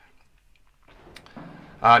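A very quiet pause in a man's voice-over narration: a faint single mouth click about a second in, then a low hiss, and a spoken 'uh' right at the end.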